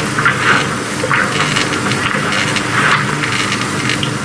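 Steady hum and hiss from a 35mm print's optical soundtrack running on a Steenbeck flatbed editor, with short soft noises from the film's sound at uneven moments over it.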